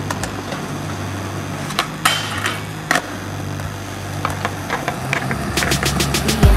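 Skateboard riding on concrete: a steady wheel-rolling noise with several sharp clacks of the board, the biggest about two and three seconds in and a cluster near the end, over a steady low hum.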